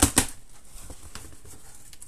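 Cardboard shipping box being opened: the packing tape is slit with a knife and the flaps are pulled apart. Two sharp cracks right at the start, then quieter rustling and scraping of cardboard.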